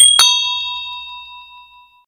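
Bell 'ding' sound effect for a subscribe animation: two quick metallic strikes, then a bright ringing tone that fades away over about two seconds.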